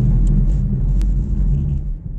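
Loud, steady low rumble, like a running vehicle heard from inside it, with one faint click about a second in.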